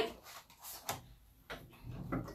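Faint handling knocks and rustles from the camera being picked up and turned around, with a few light clicks scattered through.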